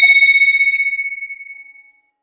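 A single electronic chime tone, the sound of an animated logo sting. It rings steadily, then fades out smoothly over about two seconds with a slight flutter, dying away near the end.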